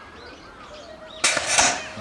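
A BMX starting gate slamming down onto the start ramp about a second in: a sudden, loud metal clatter lasting about half a second that releases the riders at the start of the heat.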